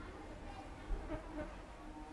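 A flying insect buzzing close by, with a single sharp knock a little under a second in.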